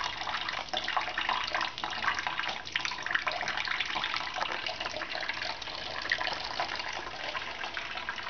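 Thin stream of water from a kitchen mixer tap running steadily into a stainless steel sink that holds some water: an even trickle with small irregular splashes.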